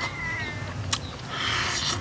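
Close-up eating noises: wet chewing and tearing of a curry-coated chicken leg, with a sharp smack about a second in and a burst of wet chewing near the end. A short high-pitched animal call sounds at the very start.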